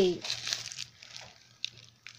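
Plastic packaging of frozen hamburger patties crinkling as it is handled, the crackles fading out over the first second, followed by a single sharp click.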